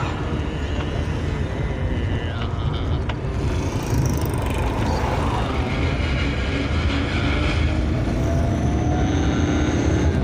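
Car engine and road noise heard from inside the cabin of a small, older car on the move; the engine note rises steadily over the last few seconds as the car speeds up.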